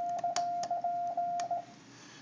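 Yaesu FT-950 transceiver's CW sidetone: a steady tone keyed on and off in Morse elements at 18 words a minute from a touch key, lasting about a second and a half. Two sharp clicks fall within it.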